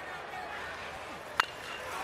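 Steady stadium crowd noise, then, about one and a half seconds in, one sharp crack of a metal baseball bat squarely hitting a pitched ball.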